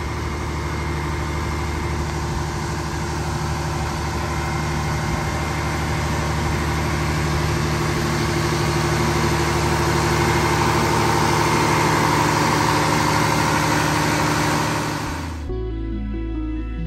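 Diesel generator sets running steadily, a loud mechanical hum over a dense hiss, growing louder as the open generator shed is approached. They are making the roadhouse's own off-grid electricity. The sound cuts off suddenly near the end, giving way to soft background music.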